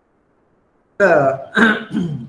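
Silence for about a second, then a man's voice comes in suddenly and loudly: two short voiced sounds, a clearing of the throat or the first word of speech.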